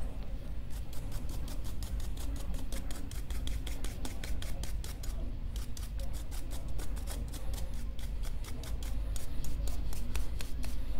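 A grinder brush scrubbing old coffee grounds off the metal upper burr carrier of a coffee grinder, in quick short strokes, several a second, with a brief pause about five seconds in.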